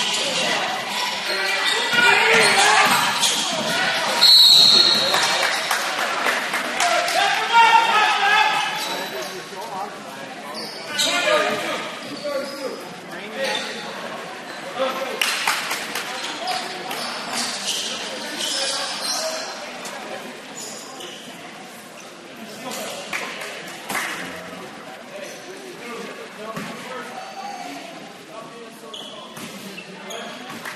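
Indoor basketball game sounds echoing in a gym: a ball bouncing on the floor, with voices of players and spectators calling out. It is busiest and loudest in the first ten seconds and quieter after, once play stops for free throws.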